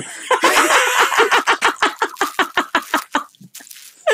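Laughter in a long run of quick, rhythmic bursts that dies away about three seconds in.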